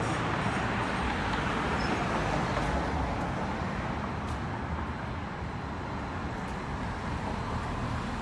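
Street traffic: a steady rush of cars passing on a city street, slowly growing quieter.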